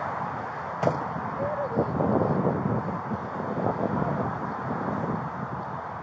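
A single sharp knock just under a second in, then a Dodge Charger's engine running as the car pulls away slowly, its low rumble growing about two seconds in.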